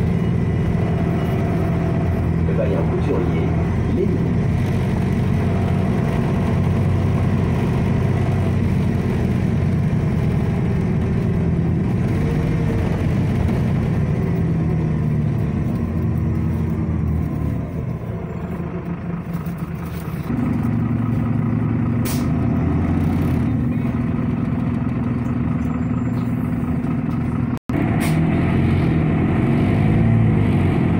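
Irisbus Citelis city bus heard from inside the passenger cabin: a steady engine and drivetrain hum. It drops quieter for a few seconds around a stop about two-thirds of the way through, then comes back stronger and steady as the bus moves off. The sound cuts out for an instant near the end.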